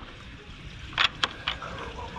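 A few light clicks about a second in, from the metal latch and door of a wooden mesh enclosure being worked, over a low rumble of wind on the microphone.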